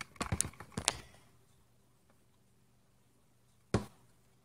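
A wooden stirring stick clicking and scraping against a plastic tub for about a second, then near silence, then a single sharp knock near the end.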